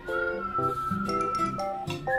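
Background music with a cat meowing over it: one long, drawn-out meow that falls slightly in pitch.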